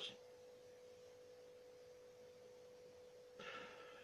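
Near silence with a faint, steady, pure tone held on one pitch, and a brief faint sound shortly before the end.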